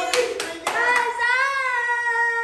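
A few hand claps, then a voice holding one long cheering note that wavers slightly as it is held.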